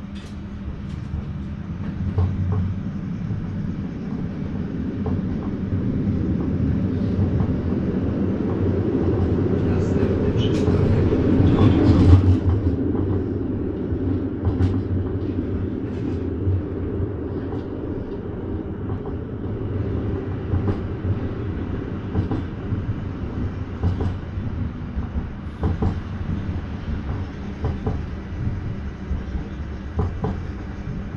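A Düwag GT8S articulated tram running, heard from inside the car: a steady rumble of wheels on rails with scattered knocks. The noise builds to its loudest about twelve seconds in, then eases off.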